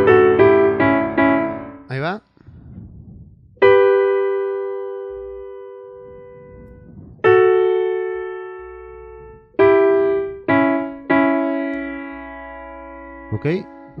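Yamaha digital keyboard on a piano voice. A quick run of notes ends about two seconds in. Then five chords are struck one at a time, each left to ring and slowly fade.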